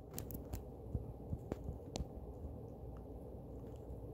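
Faint scattered clicks over a low steady rumble, with most of the clicks in the first two seconds.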